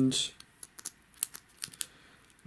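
A handful of faint, sharp clicks and crackles from a small foam-board 3D puzzle figure with a plasticky coating being turned and pressed between the fingers.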